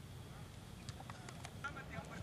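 A few quick, sharp knocks about a second in, then people calling out faintly near the end.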